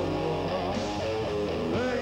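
Rock band playing live between sung lines, electric guitar to the fore over bass and drums.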